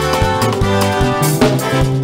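A live band playing dance music, with a steady bass line, guitar and a regular drum beat.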